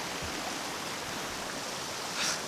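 Shallow creek running over boulders and rocks: a steady rushing of water.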